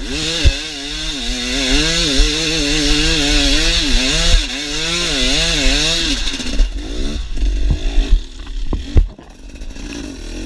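A KTM EXC 250 two-stroke enduro motorcycle's engine revving hard, its pitch rising and falling quickly as the throttle is opened and shut under load. In the second half the engine note weakens and breaks up, with several sharp knocks, and it drops off briefly near the end.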